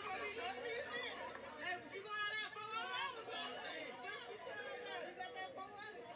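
Chatter of several people talking over one another, with one voice standing out clearly about two seconds in.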